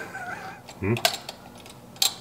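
A few light clicks and taps of metal parts being handled as a replacement four-barrel carburetor is set down onto its spacer and gasket stack on the intake manifold.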